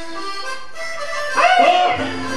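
Instrumental backing track of a ranchera song starting through a PA system: an intro of sustained melodic notes, with a loud swooping, bending phrase about three-quarters of the way through.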